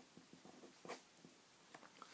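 Faint scratching of a pen writing on paper, a series of short strokes with one slightly stronger stroke about a second in.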